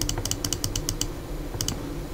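Clicking at a computer: a quick run of about ten sharp clicks in the first second, then a few more near the end.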